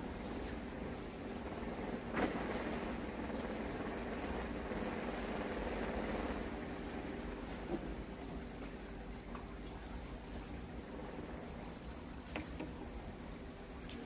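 A steady watery hiss, like splashing or rain, over a faint steady hum, with a sharp knock about two seconds in and a lighter one near the end.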